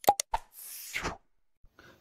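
Button-click sound effects of a subscribe-and-share animation: three quick clicks, then a short whoosh falling in pitch about half a second in.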